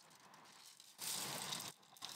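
A hand rummaging among plastic-wrapped accessories in a tester's fabric carry case: a brief, soft handling noise about a second in, with near silence before it.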